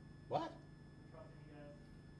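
A single short cry rising in pitch about a third of a second in, followed by faint murmuring, over a low steady hum.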